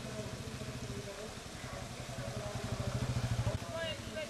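Motorcycle engine running as it rides past close by, its rapid exhaust pulses growing louder before cutting off suddenly near the end.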